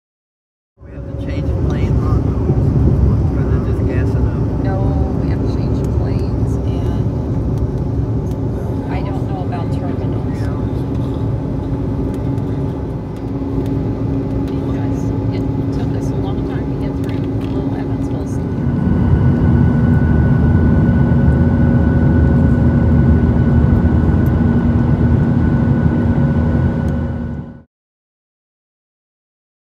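Jet airliner cabin noise in flight: a steady engine rumble with a low hum. The hum shifts about 13 seconds in and grows louder, with a new, higher tone, at about 19 seconds.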